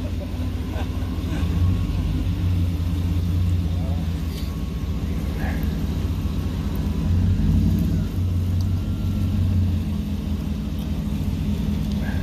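Pickup truck engine running while the truck drives slowly, a steady low rumble that swells twice.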